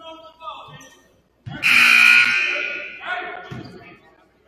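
Gymnasium scoreboard horn sounding once, loud and sudden, for about a second and a half, its tail ringing in the large hall.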